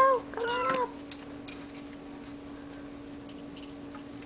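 Bambino Sphynx cat meowing twice in quick succession in the first second, the first meow louder, over a steady hum.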